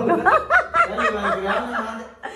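A person laughing: a quick run of short snickering laughs, about five a second.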